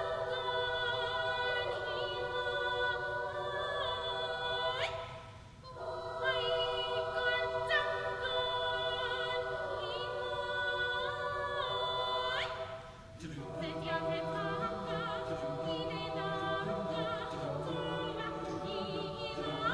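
High school mixed choir singing a traditional Filipino folk song in sustained, held chords. The sound dips briefly twice, about a third and two thirds of the way through, as the singers breathe between phrases, and lower voices join in after the second break.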